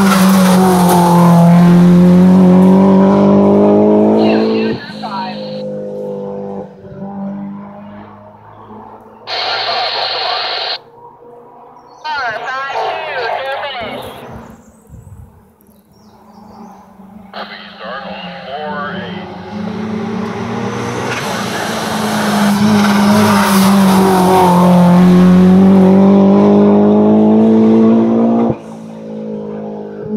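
Turbocharged Honda S2000's four-cylinder engine at full throttle as it accelerates out of a corner, its note dipping and then climbing until it cuts off about four seconds in. After a quieter stretch with short hisses, a second hillclimb car comes through at full throttle, its note again climbing, from about twenty seconds in until near the end.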